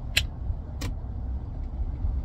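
Steady low rumble of a car heard from inside its cabin, with two short sharp clicks within the first second.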